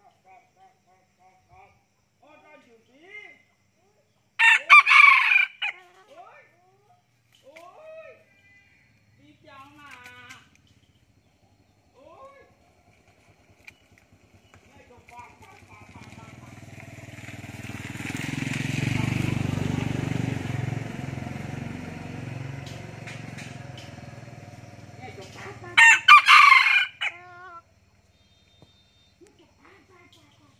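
F2 red junglefowl rooster crowing twice, about twenty seconds apart: each crow short and clipped, cut off abruptly, the clipped crow prized in a breeding cock.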